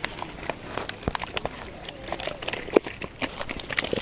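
Freshly caught small crucian carp and common carp flapping in a plastic basin as the keep net is emptied: a quick, irregular run of wet slaps and clicks.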